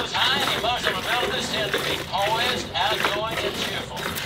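Indistinct talking voices that the transcript does not make out as words.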